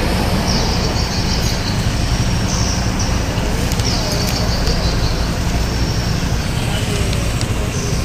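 An engine idling steadily, a low even rumble, with a high hiss that comes and goes.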